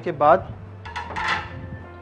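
A metal baking tray being handled on the counter: a brief scraping clatter about a second in.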